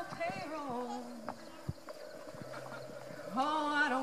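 A woman singing a song live at a microphone: a short gliding phrase at the start, a steadier low accompanying tone in the middle, and a strong held sung note about three seconds in.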